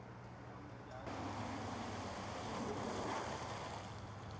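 A car driving past: its tyre and engine noise swells about a second in, peaks and fades toward the end, over a steady low hum.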